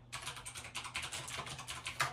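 Typing on a computer keyboard: a quick, continuous run of keystroke clicks.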